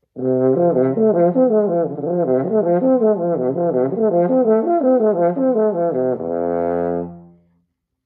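French horn playing a slurred lip-flexibility arpeggio exercise, rolling up and down the overtone series, starting with the sixteenth-note pickup lengthened into an eighth note. It ends on one long held lower note about six seconds in, which dies away before the end.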